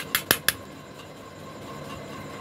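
Metal spoon clinking against a stainless steel bowl of mashed potato filling: a few quick clicks within the first half second, then only a faint steady background hum.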